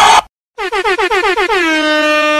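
A horn sounding a rapid string of short honks, about eight a second, each dipping slightly in pitch, then running into one long steady held blast.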